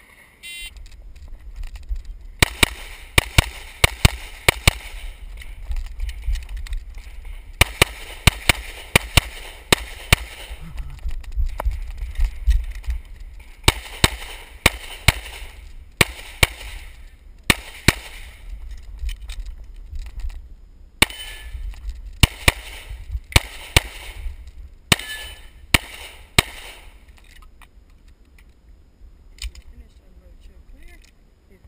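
A shot timer's start beep, then rapid semi-automatic pistol fire in quick strings of shots, about half a dozen strings over some 24 seconds with short pauses as the shooter moves between positions. A low rumble of wind and movement runs under the shots.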